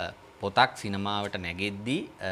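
A man speaking in Sinhala, with a short pause just after the start.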